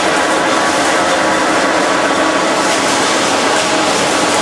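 Industrial machinery running steadily: a loud, even whir and hum with several constant tones and no change in level.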